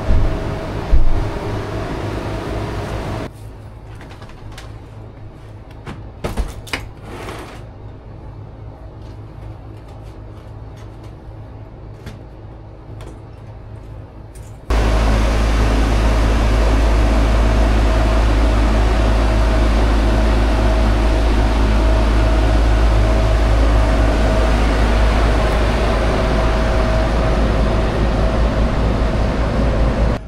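Trane 8.5-ton package heat pump running: a steady machine hum, with knocks as its sheet-metal access panel is pushed shut in the first seconds. After a quieter stretch with a few clicks, the sound jumps about halfway through to a loud, steady run of the unit's compressor and condenser fan with a deep rumble.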